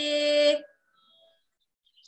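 A woman's voice chanting Sanskrit holds the last vowel of a verse line on one steady pitch, then cuts off abruptly about half a second in.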